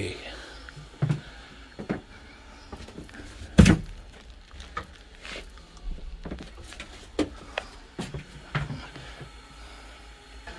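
Scattered knocks and thumps inside a wooden railway passenger coach, the loudest a sharp thud about three and a half seconds in, with brief snatches of voices.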